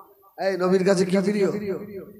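A man's voice preaching into a microphone. After a short pause, one drawn-out, melodic phrase starts about half a second in.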